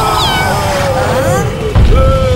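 Cartoon character cries with a cat-like yowling meow, over a low ground rumble, then a heavy deep thud near the end as the ground shakes.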